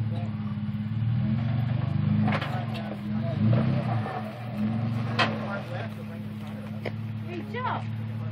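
Jeep Wrangler Unlimited's V6 engine running under load as it crawls over a boulder, the revs rising and falling as the throttle is worked. A sharp knock comes about five seconds in.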